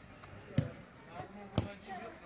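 Two sharp thuds of a football being kicked, about a second apart, the first the louder, with distant players' voices shouting.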